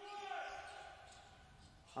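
Faint sports-hall sound: a handball bouncing on the court floor during play, under a fading voice in the hall.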